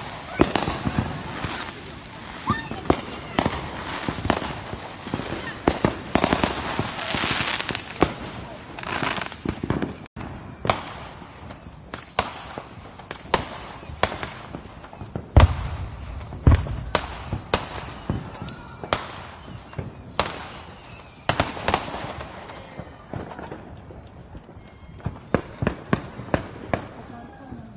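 Consumer fireworks going off: repeated sharp cracks and bangs throughout. From about ten seconds in to about twenty-two seconds comes a run of short falling whistles, each starting on a crack, with two deep booms near the middle.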